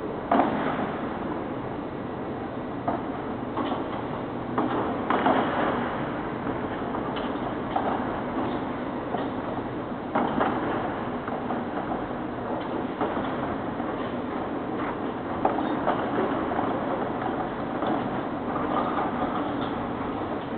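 Telescoping hangar door panels sliding closed along their tracks: a steady rolling rumble with a clunk about every five seconds.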